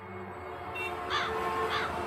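Bird calls, several short calls in a row, over steady background music that swells in.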